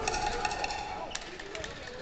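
Voices in a boxing hall, with one held shout, and a quick run of sharp smacks in the first second followed by one more just after.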